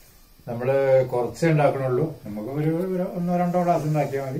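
A man speaking, with nothing else heard.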